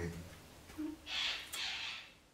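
A short, quiet hummed "mm" of agreement from a person, followed by two soft breathy puffs.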